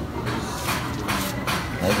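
Rustling and scraping of a small cardboard box of baking soda being handled, a series of short strokes, with a brief spoken exclamation near the end.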